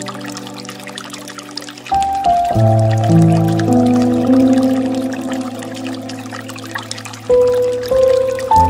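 Slow piano music with long held chords, a new chord struck about two seconds in and another near the end, over the steady trickle and pour of a bamboo water fountain.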